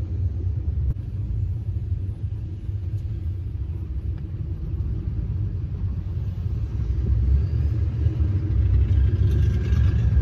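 Low, steady in-cab rumble of a Duramax diesel pickup rolling along, engine and road noise together, growing louder about two-thirds of the way through.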